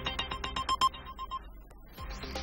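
TV news headlines theme music ending in a quick run of short, bright electronic pings that fades out about a second and a half in.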